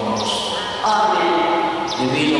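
A voice ringing through a large, echoing church, in long drawn-out syllables, getting louder a little under a second in.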